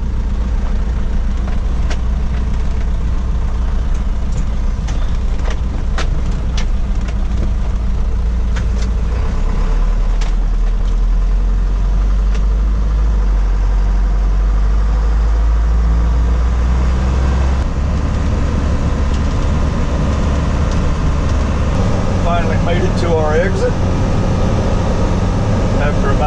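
A truck's engine and road noise heard from inside the cab while driving: a steady low drone that drops in pitch about a third of the way through and rises again about two-thirds through.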